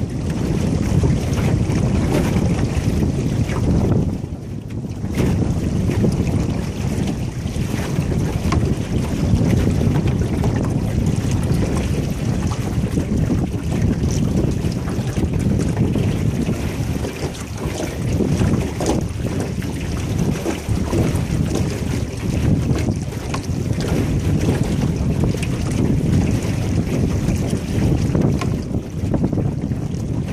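Wind buffeting the microphone as a small aluminum boat moves across a lake, with water washing along the hull; it eases briefly about four seconds in.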